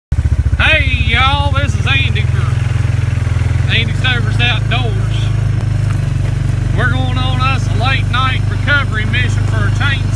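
A small off-road vehicle's engine running steadily with a low, even hum while it is driven along a rough trail, with a voice heard over it.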